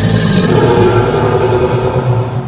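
Dragon fire-breath sound effect: a sudden, loud rushing blast of flame with a deep rumble beneath it, held steady for about two and a half seconds.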